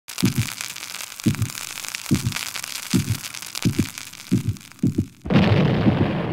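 Sound effects for a burning fuse: a crackling sizzle over paired low thumps like a heartbeat that come faster and faster, then a loud explosion a little after five seconds in.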